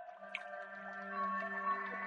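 Ambient music of layered, long-held tones, with a new low tone coming in shortly after the start, sprinkled with a few short water-drip sounds.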